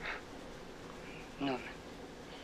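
A single soft spoken word from the film's dialogue, about one and a half seconds in, over a faint steady hum.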